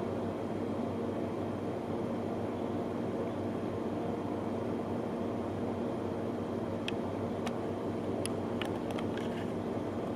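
A steady low mechanical hum with even pitched lines, like an appliance running in a small room, with a few faint light clicks in the last three seconds.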